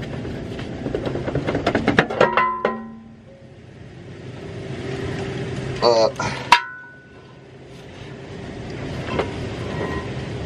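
Steel bellhousing being worked loose off the back of the engine: a quick run of metallic clanks and rattles that ring on for the first couple of seconds, then one sharp ringing clank about six and a half seconds in.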